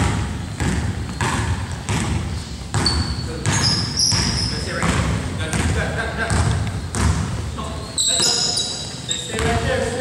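Basketball dribbled on a hardwood gym floor: repeated bouncing thuds in a reverberant hall, with short high sneaker squeaks and players' indistinct voices.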